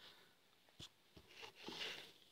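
Near silence: room tone with a few faint ticks and a short faint rustle near the end.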